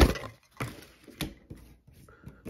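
A few light clicks and knocks of small plastic action-figure accessories being handled and set down on a tabletop.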